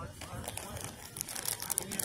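Plastic snack bag crinkling in a quick run of crackles as a hand works the top of a large bag of pistachios open.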